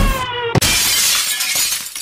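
A shattering crash sound effect in the dance's music track: a falling tone, then a sudden crash about half a second in that rings on and cuts off abruptly at the end.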